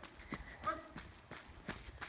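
Running footsteps on a paved road, a quick even patter of about three steps a second.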